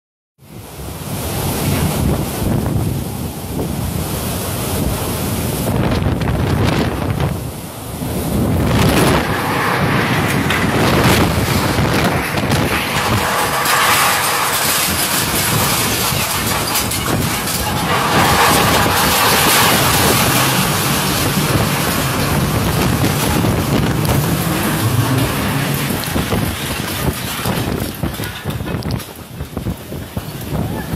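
Violent storm wind and heavy rain blowing without a break, with wind buffeting the microphone. It grows louder from about nine seconds in and eases slightly near the end.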